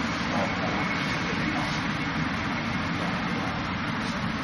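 A steady, fairly loud rushing noise with a low hum underneath, with a couple of faint knocks of hands against the wooden dummy's arms.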